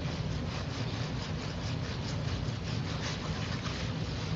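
Steady hiss and rumble of background noise from an open microphone, carried over an online voice-chat connection, with no one speaking.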